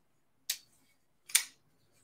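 Two sharp metallic clicks, about a second apart, of a folding pocket knife being spidey-flicked: the blade snapping past its detent and locking.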